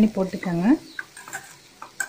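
Metal spoon stirring cooked green gram sundal in a steel pan, with a few light scrapes and clicks. A voice speaks over the first part.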